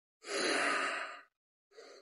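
A person sighing heavily: one long breathy exhale of about a second, then a short breath near the end.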